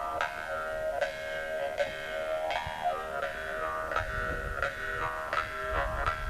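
Several Yakut khomus (jaw harps) played together: a steady drone with overtones sliding up and down above it, plucked about once or twice a second.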